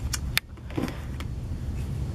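Handling noise: a steady low rumble with a few sharp light clicks in the first second, the loudest a little under half a second in, as objects and the handheld camera are moved.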